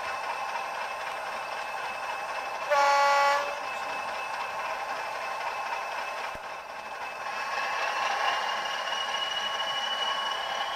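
Sound-fitted model Class 40 diesel's simulated English Electric engine running steadily through the model's small speaker, with one short horn blast about three seconds in. Later the engine note builds, with a slowly rising high whistle as it powers up.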